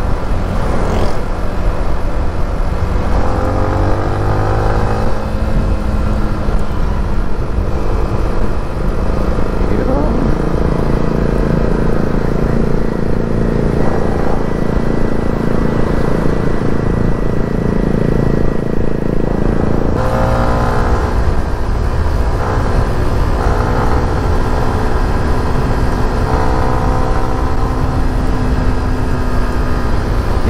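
Yamaha Sniper underbone motorcycle's single-cylinder engine running on the move, under heavy wind rumble on a helmet-mounted microphone. The engine pitch shifts as it speeds up, about four seconds in and again about twenty seconds in.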